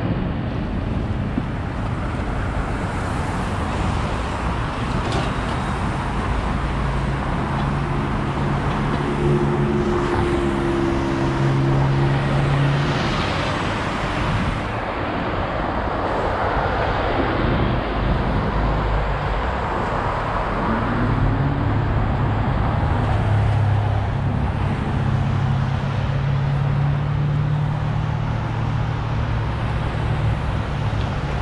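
City street traffic: cars and larger vehicles running and passing, over a steady road noise. Engine hums stand out in the middle and again through the last third, and one engine rises in pitch as it speeds up a little past two-thirds in.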